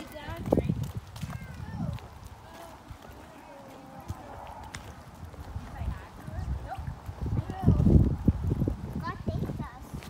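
Footsteps walking on a paved street, with faint voices in the background and a loud low rumble about eight seconds in.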